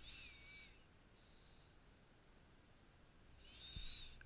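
Near silence, with a faint high-pitched warbling tone just at the start and another near the end.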